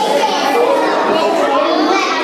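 A roomful of schoolchildren chattering all at once, many overlapping young voices with no pause.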